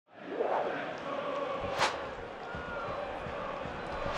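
Football stadium crowd noise fading in, with a sharp knock a little under two seconds in.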